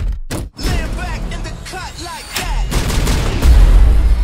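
Action-trailer sound mix: music with bursts of rapid gunfire and impacts. A heavy low rumble swells about three seconds in.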